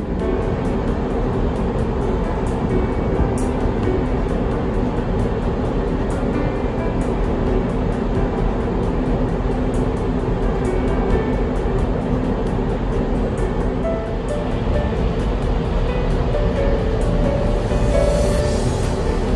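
Steady rushing noise on the open deck of a ferry under way, heaviest in the bass: wind on the microphone together with the ship's running and its wake. Soft music runs faintly underneath.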